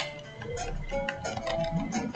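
Computer keyboard keys clicking as a word is typed, a sharp click first and then lighter irregular taps, over faint background music.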